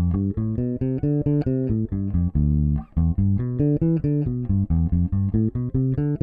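Ibanez electric bass playing a technique exercise of seventh-chord arpeggios and their matching mode scales, Dm7 with D Dorian moving on to Em7 with E Phrygian. It is an even run of separate plucked notes, with one longer held note about halfway through.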